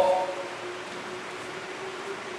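A man's voice breaking off right at the start, then a pause of steady background hiss with a faint, even hum.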